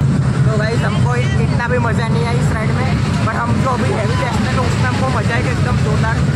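Many voices chattering and calling out over a loud, steady low rumble, the din of riders on a moving fairground ride.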